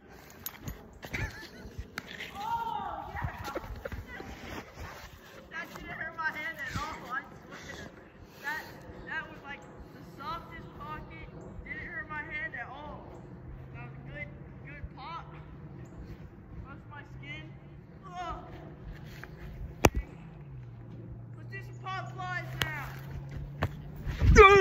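Faint voices calling out at a distance, too far off to make out words, with a single sharp smack about 20 seconds in, a baseball landing in a leather glove. A low steady hum comes in during the second half and drops slightly in pitch after the smack.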